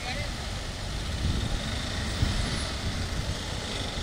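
Road traffic on a wet road: a steady low engine rumble with tyre hiss.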